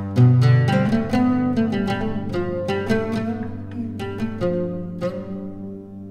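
Instrumental music: a run of plucked string notes, in the manner of pizzicato, over a sustained low drone, the plucking thinning out near the end while the drone holds.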